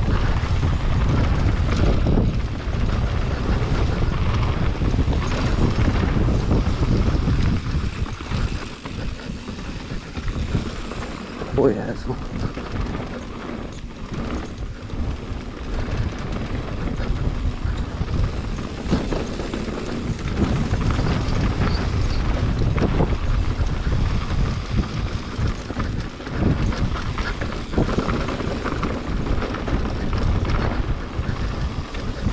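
Mountain bike descending a dirt trail: wind buffeting the camera microphone over tyres rolling on gravel and dirt, with the bike rattling over bumps. A sharp knock comes about twelve seconds in.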